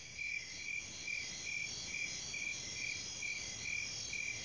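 Crickets chirping in a night ambience: a regular chirp about two and a half times a second over a steady, higher insect trill.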